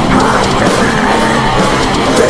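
Heavy metal song: distorted electric guitar riffing over drums, with a harsh vocal shouting the lyric line.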